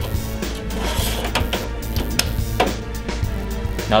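Background music, with a hard-drive tray sliding into a server chassis's front hot-swap bay and latching shut, heard as a few short clicks.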